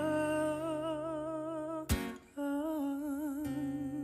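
A man singing two long held notes with vibrato to his own acoustic guitar, with one strum about two seconds in between the notes. The voice stops shortly before the end, leaving the guitar ringing.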